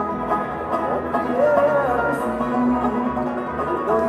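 Bluegrass band playing live: banjo, fiddle and dobro together, with sliding notes running through the tune.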